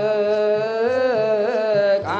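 Ethiopian Orthodox cantors (debteras) singing liturgical chant, a slow melody drawn out in long held notes that waver and bend in pitch.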